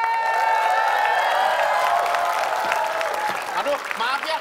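Studio audience applauding after a team is congratulated. A sustained tonal layer, cheering voices or a sound effect, rides over the clapping and fades out about three seconds in.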